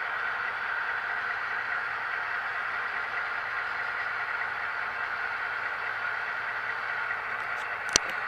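Steady hiss picked up by a camera riding on a model train car, with a few sharp clicks near the end.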